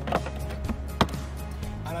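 One sharp knock about a second in, with a lighter click just before it: a sample section of insulated magnesium-oxide (MGO) wall panel being set into place against a display column on a countertop. Background music plays under it.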